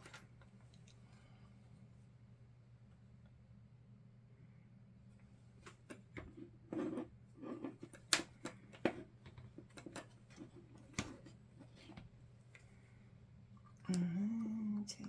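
Small sharp clicks and taps of metal parts as an Edison die-cast metal cap gun is taken apart by hand, coming in a run after about five quiet seconds, with a few duller knocks among them. A steady low hum runs underneath.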